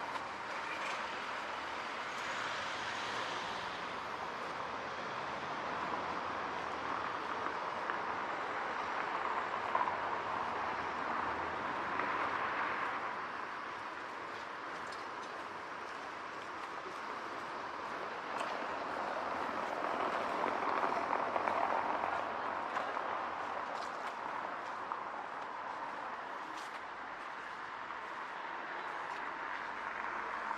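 Outdoor street ambience: a steady wash of traffic noise that swells twice, a little before halfway and again about two-thirds through, as vehicles go by.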